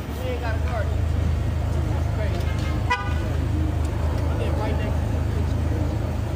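A car horn gives one short toot about three seconds in, over a steady low rumble of cars in the street, with voices talking in the background.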